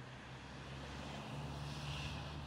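A train approaching on the line, a low rumble that grows steadily louder.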